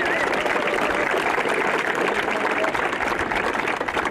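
Crowd applauding.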